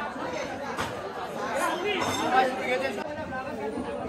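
Chatter of several people's voices talking over one another.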